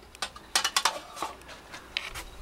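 Metallic clicks and clacks from a Saiga 12 semi-automatic shotgun being handled and readied, a quick cluster about half a second in and a single click near the end.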